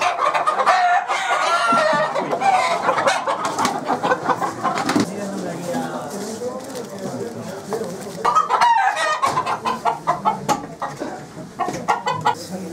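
Gamecocks clucking and crowing, with a run of sharp clicks and rattles about eight seconds in.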